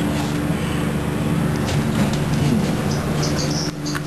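Westinghouse hydraulic elevator running after a floor call, its machinery giving a steady low hum.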